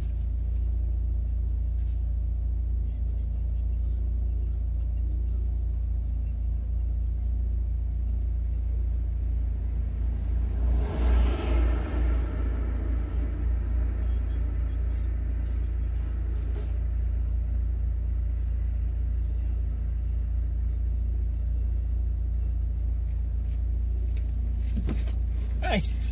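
A stationary car's engine idling steadily, heard from inside the car. About eleven seconds in, a louder noise swells over it for a couple of seconds.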